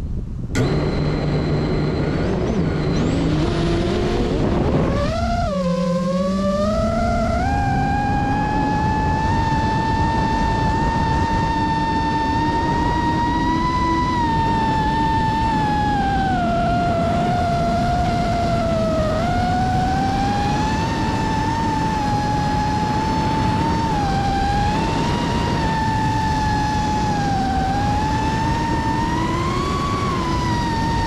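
FPV quadcopter's brushless motors heard from on board: a click and a low hum as they spin up, then a sharp upward sweep to a high whine about five seconds in as the drone takes off. The whine then holds, wavering up and down in pitch with the throttle as it flies.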